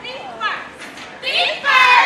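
Women's voices shouting short, high-pitched calls, ending in the loudest, longest call near the end.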